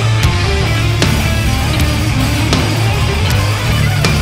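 Live band playing loud, heavy music on electric guitars, bass guitar and drum kit, with sharp cymbal strikes over a thick, heavy bass.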